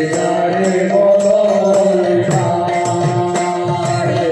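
Devotional kirtan: a woman singing a chanted melody through a microphone, with long held notes, accompanied by regular drum and percussion strokes.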